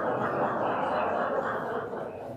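Congregation laughing and murmuring together in the church hall, a swell of many voices that fades near the end.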